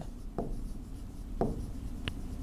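Stylus writing on the glass face of an interactive touchscreen board: faint strokes with two short taps about a second apart.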